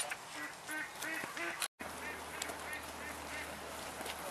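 Four short honking animal calls, each brief and on a similar pitch, in the first second and a half. After a sudden cut, a low steady hum with faint outdoor background.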